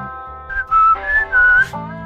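A person whistling a short phrase of four notes, starting about half a second in, over background music.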